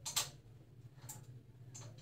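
Metal-hooked clothes hangers clicking on a metal hanging rail as garments are pushed aside and lifted off: one sharp click near the start, then two lighter clicks, over a low steady hum.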